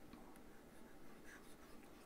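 Near silence: room tone with a few faint clicks and light scratching.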